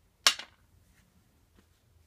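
A glass chess piece set down on a glass chessboard: one sharp clink about a quarter second in, with a faint tick later.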